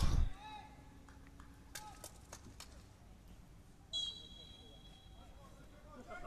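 Quiet open-stadium ambience with faint distant shouts from players. About four seconds in, a referee's whistle sounds once and holds for close to two seconds before fading.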